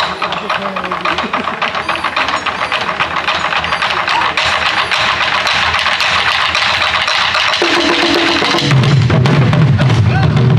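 An ensemble of Korean barrel drums (buk) played with sticks in a fast, dense drum roll that swells steadily louder. Near the end, a low, deep backing part comes in under the drums.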